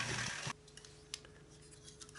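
Electric model train running along its track, a steady whirring hiss of motor and wheels that cuts off abruptly about half a second in. After that, near silence with a faint steady hum and one small click.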